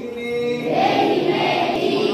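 A large group of children and adults chanting a Sanskrit prayer to Saraswati together in unison, one drawn-out phrase after another, with a short break just at the start.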